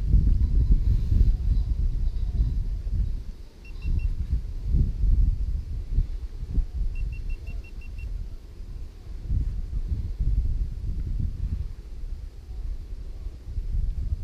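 Wind buffeting the microphone of a handheld camera: a loud, uneven low rumble with a short dip a few seconds in. Faint short runs of high, evenly spaced pips come twice, three at about four seconds and about seven just after seven seconds.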